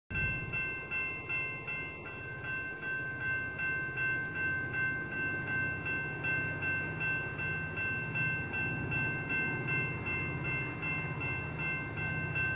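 Railroad grade-crossing warning bell ringing steadily with a ding repeated a few times a second, signalling that a train is approaching.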